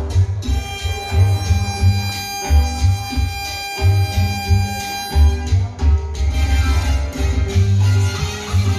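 Live music from a small Latin band: an electronic keyboard playing a bouncing bass line under a long held melody note, an instrumental passage with no singing.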